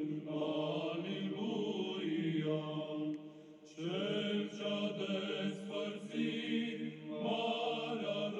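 Slow sacred vocal chant in low voices, holding long sustained notes, sung in two phrases with a brief break about three and a half seconds in.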